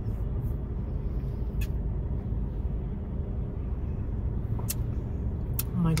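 Steady low rumble of a car idling, heard from inside the cabin, with a few brief faint ticks.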